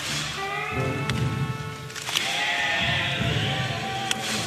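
A rock band playing live in a concert hall: electric guitars and a sung or played melody line over bass and drums, with sharp drum strokes cutting through.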